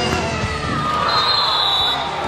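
Futsal ball kicked and bouncing on a wooden gym floor, with children's voices echoing in the hall. A brief high steady tone sounds about halfway through.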